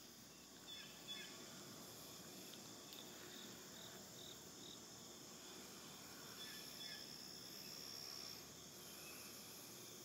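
Faint insects chirring steadily, with a short run of about five quick chirps a little past three seconds in and a thin, high, steady drone a few seconds later.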